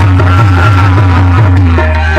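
Live qawwali: harmoniums hold steady chords while men sing into microphones, over hand-drum beats.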